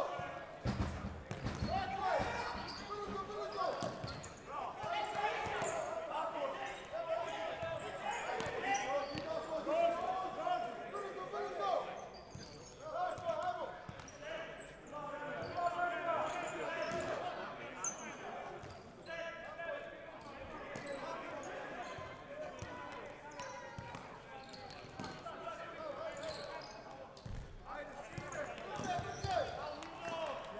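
Futsal ball being kicked and bouncing on a sports-hall floor, with players' shouts and calls echoing through the hall.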